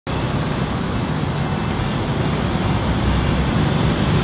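Steady street traffic noise, a continuous low rumble with no distinct events.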